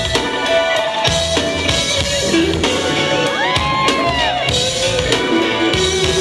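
Live reggae band playing, with drum kit, bass and keyboards in a loud, steady groove and no vocals. About halfway through, a high tone slides up, holds, and falls away.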